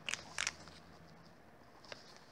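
Two short crackly clicks in quick succession, then a fainter click near the end, over a faint low hum.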